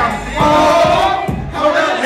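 Live hip-hop performance: several rappers shouting together into microphones over a beat with deep bass.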